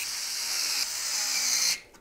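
Electric screwdriver running steadily, driving in the screws that hold a case fan in place, then cutting off suddenly near the end.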